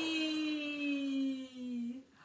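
A woman's long, drawn-out cheer of "yay!", held on one slowly falling pitch and breaking off shortly before the end.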